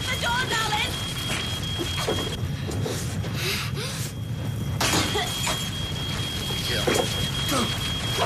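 Crackling of a burning building over a steady low rumble, with a steady high-pitched alarm tone that drops out for a couple of seconds midway. Short, broken vocal sounds from a trapped girl in the smoke.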